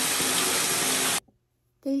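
Water running from a bathtub tap into a filling tub, a steady rush that cuts off abruptly just over a second in.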